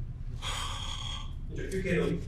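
A breathy exhale like a sigh, close to a microphone, lasting under a second, over a low steady hum; a man's voice starts speaking near the end.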